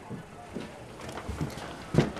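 Footsteps on a hard floor: a loose series of light knocks, ending in a sharper knock.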